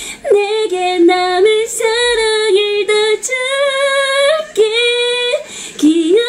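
A woman singing a Korean ballad solo, a bending melody in phrases with a longer held note in the middle and quick breaths between phrases.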